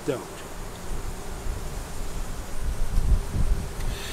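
Wind buffeting the microphone: a low, fluctuating rumble that swells about three seconds in.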